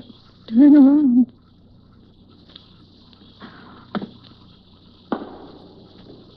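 Radio-drama night sound effects: a steady chirring of crickets. A brief wavering, voice-like hum comes about a second in, and two sharp knocks come later, the second one echoing.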